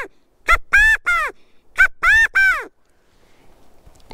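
Handmade California (valley) quail call with a rubber-band reed, blown in the three-note 'Chi-ca-go' cadence twice. Each call is a short sharp note followed by two longer notes that rise and fall in pitch.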